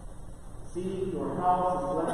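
A man's voice intoning the Gospel reading in a chant-like recitation, resuming after a short pause with "I tell you" less than a second in.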